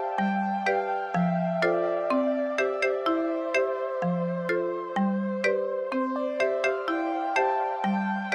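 Instrumental opening theme music: a repeating melody of short, clean synthesized notes, about two a second, over a bass note that changes every second or so.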